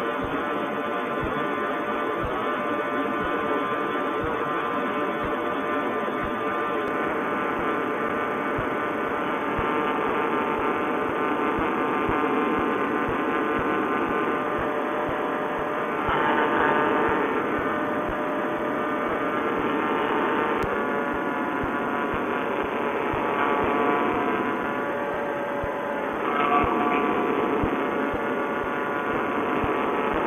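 Paramotor trike's single-cylinder two-stroke engine running steadily under power in flight, swelling briefly about halfway through and again near the end.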